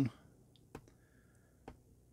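Two sharp clicks about a second apart from a stainless steel watch bracelet's folding clasp as it is handled.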